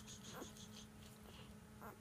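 Faint, high, short squeaks from newborn chocolate Labrador puppies nestled against their mother: one at the start, one about half a second in, one near the end. A soft rapid ticking runs until just under a second in, over a low steady hum.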